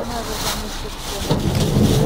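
Inside a city bus in motion: steady low rumble of the engine and road noise.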